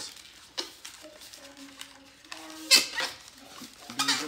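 Latex modelling balloon squeaking as it is twisted and rubbed in the hands, in faint steady squeals that grow louder, with one sharp loud squeak or rub a little past halfway.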